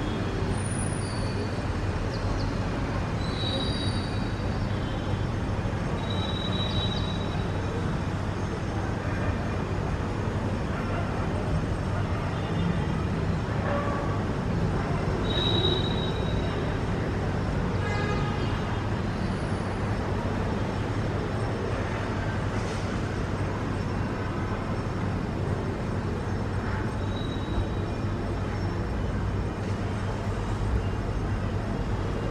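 Steady outdoor background noise like distant traffic, with a constant low hum. A few short, thin high chirps, typical of small birds, sound at intervals throughout.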